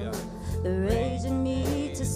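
Live worship band playing: electric bass, keyboard, congas and drum kit under a vocalist singing a held, wavering melody, with steady drum and cymbal strikes.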